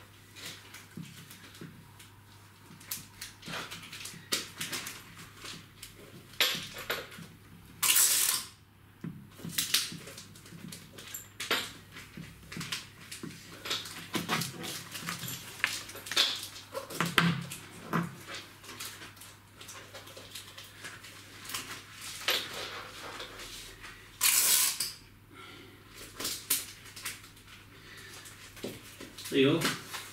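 Gift wrapping paper and gift labels being handled: irregular rustling and crinkling with small taps and clicks, and two louder rasping noises, each under a second, about eight seconds in and again near twenty-five seconds.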